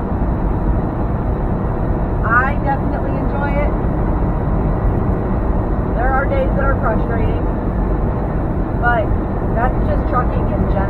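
Steady engine and road noise of a semi truck heard from inside the cab at highway speed, with a voice speaking briefly a few times over it.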